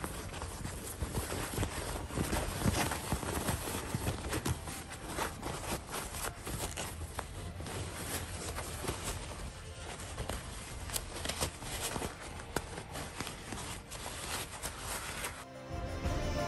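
Cotton fabric and stiff iron-on interfacing rustling and crinkling, with many small scratchy clicks, as a sewn fabric glasses case is handled and pushed through to turn it right side out.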